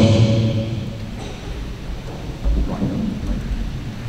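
Handheld microphone handling noise: a low rumble with a few dull thumps as the microphone is lowered and set down on a table.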